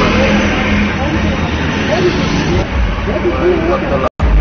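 Indistinct voices over the steady noise of a vehicle engine running.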